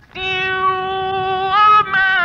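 A male Qur'an reciter's voice chanting a melodic recitation. After a brief breath pause it holds one long, steady high note, stepping up in pitch near the end.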